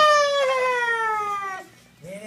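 A young dog giving one long whining cry that slides down in pitch and stops after about a second and a half.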